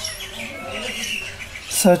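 Small birds chirping in the background with short, high chirps.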